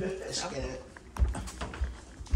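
Footsteps of several people climbing indoor stairs, with two heavy thuds about a second in and near the end, under brief talking voices.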